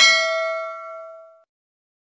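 Notification-bell ding sound effect: a single bright bell strike that rings and fades out over about a second and a half.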